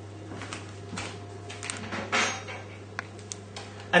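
Kitchen handling noises: a few light knocks and clatters as a chopping board and utensils are moved about and set down on a worktop, the loudest about two seconds in, over a steady low hum.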